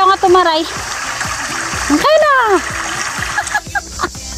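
Women's voices: a high-pitched voice in quick syllables at the start, then a single rising-and-falling whoop about two seconds in, over a steady hiss.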